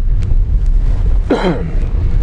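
Cabin noise inside a small Honda car driving along an unpaved forest road: a steady low rumble of tyres and engine, with a couple of faint clicks. A short falling vocal sound comes about one and a half seconds in.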